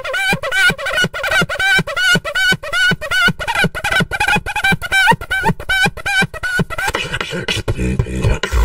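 Human beatboxing: a fast, even rhythm of mouth-made drum hits with wavering, buzzing pitched tones over them.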